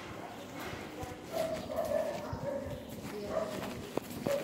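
Footsteps on a hard corridor floor, with faint voices in the distance.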